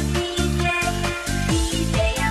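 Instrumental Eurodance music: a steady, pulsing kick drum under a synth bassline and bright synth chords.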